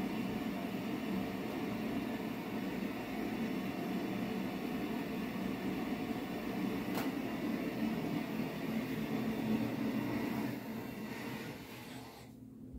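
Hot pepper tincture being swished around inside a closed mouth: a steady sloshing that fades out near the end.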